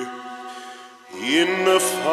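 Vocal music: a held chant-like note fades away. About a second in, a singing voice slides up into a new held note with wide vibrato, opera-like.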